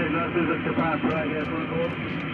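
Shortwave transceiver speaker audio: steady band hiss cut off above about 4 kHz, with faint, weak voices of stations calling in a pileup coming through the noise.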